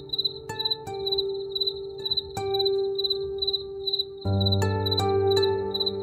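A cricket chirping steadily, about three chirps a second, over slow, soft ambient music with sustained keyboard notes and a low held pad.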